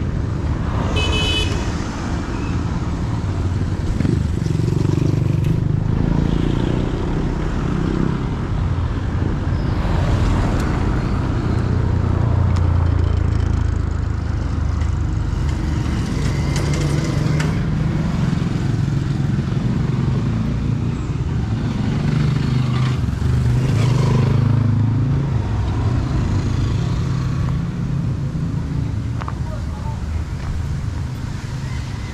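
Roadside traffic: a continuous low rumble of vehicle engines and tyres, with a short high horn toot about a second in.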